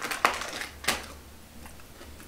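Crunching of crisp food being bitten and chewed close to the microphone: two sharp, loud crunches in the first second, then a few fainter ones.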